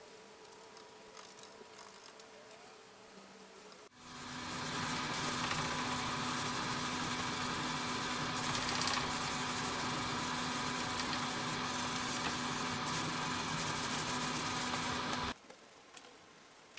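An electric hand sander running steadily on the wooden table base: a loud hiss over a constant low hum. It starts sharply about four seconds in and cuts off suddenly just before the end, with only faint room noise before it.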